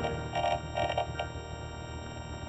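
Three short, stuttering synthesized blips in the first second or so, then a faint steady electronic hum with a thin high whine.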